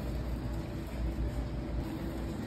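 Steady low rumble of supermarket background noise with a faint steady hum.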